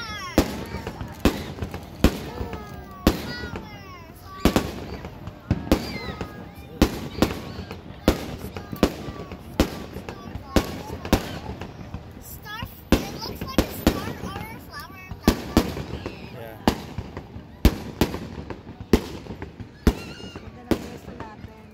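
Aerial fireworks bursting in a continuous run of sharp bangs, about one to two a second.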